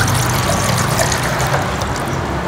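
Water being poured from a bowl into a metal cooking pot, a steady unbroken pour.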